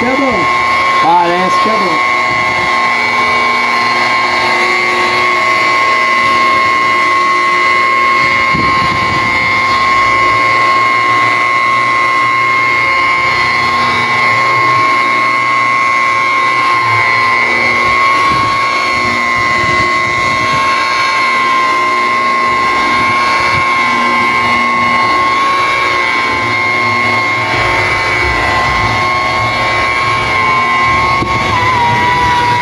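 DeWalt electric polisher running continuously with a steady high motor whine as its foam cutting pad buffs liquid cutting compound into a car's paint.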